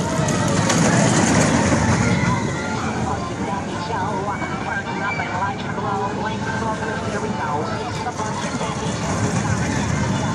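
Steel roller coaster train running along its track, its rumble loudest in the first couple of seconds, amid the voices of park crowds and riders.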